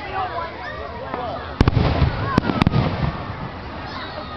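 Aerial fireworks shells bursting: a loud bang with a low rumbling boom about a second and a half in, then two more sharp cracks within the next second.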